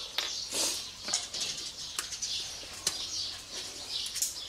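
Birds chirping in the background, with a few short, sharp clicks spread across the few seconds.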